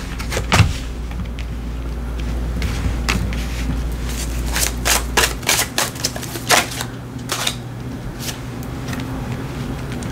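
Tarot cards being drawn from a deck and laid down on a cloth-covered table, making irregular light clicks and taps.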